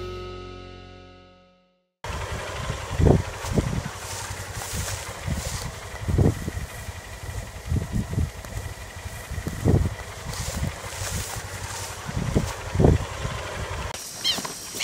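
A music jingle fades out, and after a moment of silence open-air pasture ambience begins. The ambience is a steady hiss broken by irregular low thumps against the microphone.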